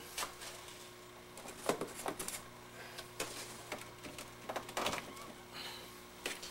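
Scattered clicks, knocks and rustles of hands plugging in a soldering station and moving things about on a wooden workbench, over a steady low electrical hum.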